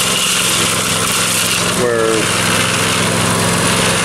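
Small gasoline engine, a Harbor Freight motor fitted in place of the original electric motor, running steadily as it turns a Harbor Freight cement mixer's drum while a bag of Portland cement is emptied in.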